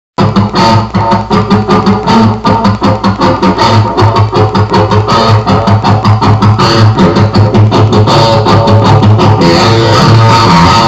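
Electric guitar playing a fast, even run of picked single notes, about four to five a second, mostly in the low register.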